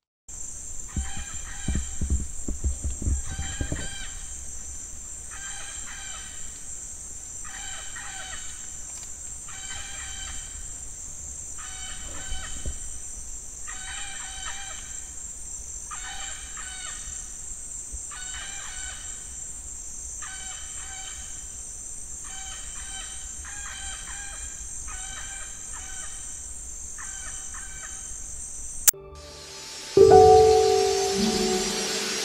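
A steady high insect drone with an animal's short call repeated over and over, about three calls every four seconds. There are low thumps of handling or wind on the microphone in the first few seconds.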